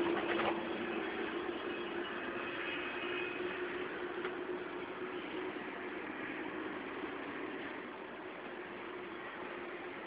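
Steady background hiss with a faint constant hum, a little quieter near the end.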